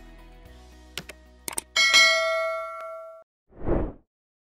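Background music fades out, then come a few quick clicks like a mouse button and a bright bell ding that rings on and dies away over about a second and a half. Near the end there is a short swish of noise that swells and fades.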